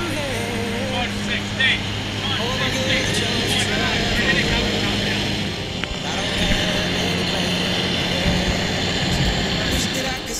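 Small high-wing propeller plane's engine droning steadily, heard inside the cabin, with young men's voices shouting over it in the first few seconds. The drone's pitch shifts slightly about six seconds in.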